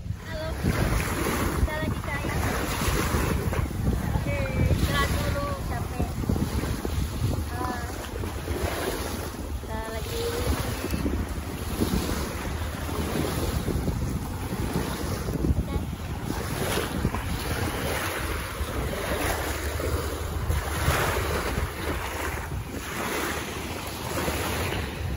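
Wind buffeting the microphone, with small waves washing onto a sandy shore.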